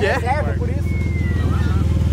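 Porsche 911 Carrera (992) twin-turbo flat-six engine running steadily at a constant speed, not being revved.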